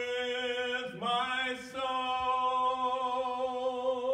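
A man singing unaccompanied into a handheld microphone, holding long notes with a slight waver. About a second in, his voice dips and slides up into the next held note.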